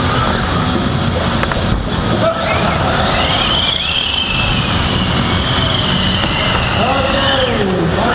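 Loud, steady hall noise with a voice in it, and a long high whine that wavers in pitch from about three seconds in, then a falling glide just before the end.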